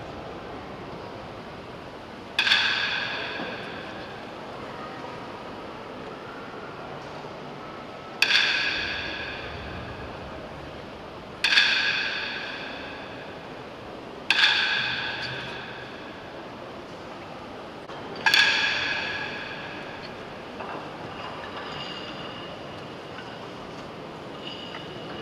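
A small metal gong struck five times at uneven intervals. Each stroke rings out with several clear tones and fades over about a second and a half.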